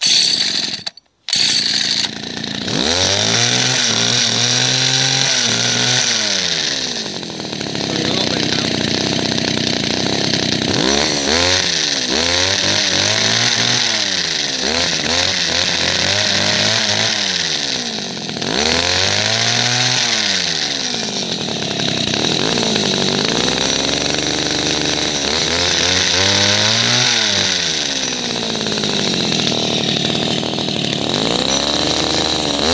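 Two-stroke petrol hedge cutter engine running with its blades going, revved up and let back down about six times so the pitch rises and falls, after two brief drop-outs near the start. Its carburettor mixture screw has been turned out a bit too far, and the engine is not running smoothly.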